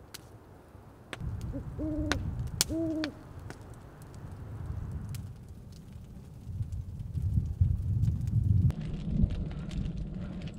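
Owl hooting: a short hoot followed by two longer hoots about two seconds in. Under it runs a low rumbling noise that grows louder in the second half, with scattered sharp clicks.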